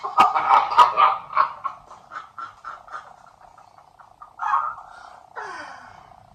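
Two men laughing hard: a run of breathy ha-ha pulses, about three or four a second, trailing off and growing fainter, then a fresh burst of laughter near the end that slides down in pitch.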